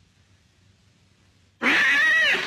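Near silence, then about a second and a half in a cat's loud, wavering yowl starts suddenly.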